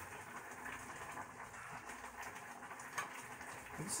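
Faint bubbling and sizzling crackle of ramen noodles and diced tomatoes simmering in a pot, with a light click of the spoon stirring about three seconds in.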